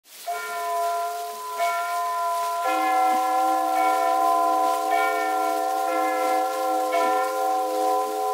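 Bell chimes struck one after another, about once a second, each note ringing on under the next.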